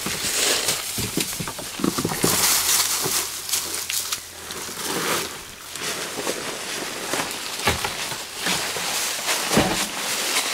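Dry leaf litter and brush rustling and crunching in irregular bursts, as animals and feet move through a creek bed, with a couple of dull knocks near the end.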